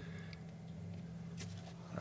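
Mantis Tornado 150 protein skimmer pump running with a faint, steady low hum. The hum is the tiniest bit present on the new motor, and the owner expects it may ease as the motor beds in.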